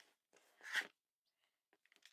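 Mostly near silence, with one brief scraping rustle a little under a second in as fabric and quilting tools are handled on a cutting mat during trimming.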